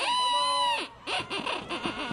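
A shrill, high-pitched cheering yell held for nearly a second and dropping in pitch at its end, followed by several short, choppy shouts.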